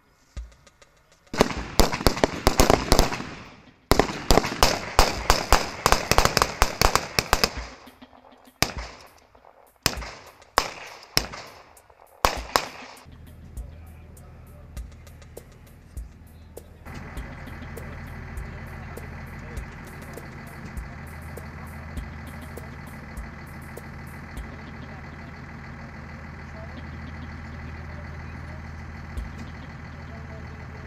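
Rifle fire on a firing range: dense, rapid volleys of shots from HK rifles for the first several seconds, thinning to scattered single shots until about twelve seconds in. After that, a steady low engine drone takes over.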